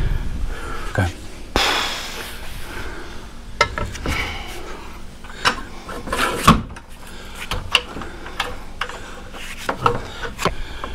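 Steel support bar of a hitch-mounted vertical kayak rack being handled and fitted onto the rack: a short rushing scrape about one and a half seconds in, then scattered metal clicks and knocks with rubbing, the loudest knock about six and a half seconds in.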